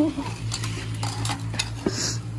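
Kitchen knife blades scraping and tapping on a concrete floor: a few short, separate knocks and scrapes, over a steady low hum.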